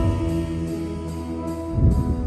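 Live worship band of electric bass, drum kit, electric guitar and piano playing a held chord with a sustained low bass note, little or no singing, and a loud drum hit near the end.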